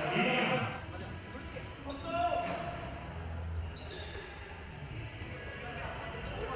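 Game sound of a youth basketball game on a hardwood gym court: the ball bouncing, short high sneaker squeaks, and players' shouts that are loudest in the first second and again about two seconds in, all with the hall's echo.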